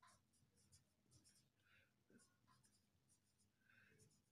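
Very faint scratching of a marker pen writing on paper, in short separate strokes.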